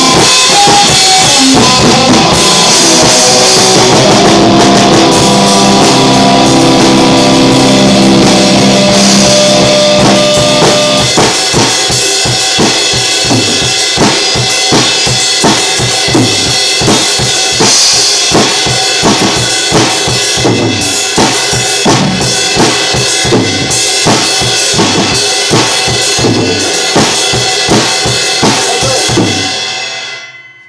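A drum kit played live in a loud rock jam, with sustained chords from another instrument over it for the first ten seconds or so. After that the chords thin out and the drums carry a steady beat of heavy hits, about three every two seconds. The playing stops and rings out just before the end.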